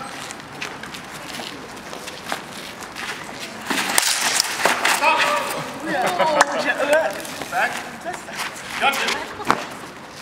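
Sword-fencing bout on cobblestones: scuffing footwork with sharp knocks of blades meeting, the strongest about four seconds in and again near the end. Untranscribed voices call out from about five seconds in.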